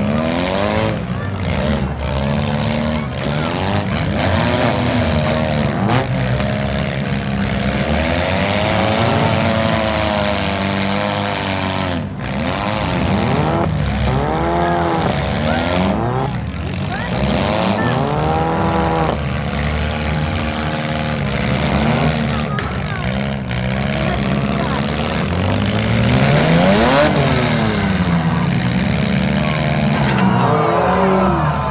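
Several demolition-derby cars' engines revving up and down together, overlapping, with sharp crashes of car bodies slamming into each other several times.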